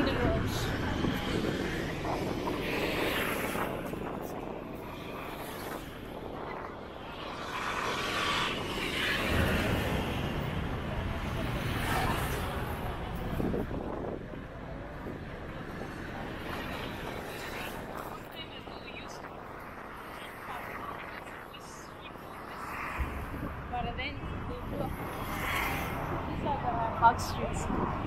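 Street traffic on a busy town road: cars and motorcycles passing, with a louder swell of passing vehicles about eight to twelve seconds in. People's voices are heard now and then over the traffic.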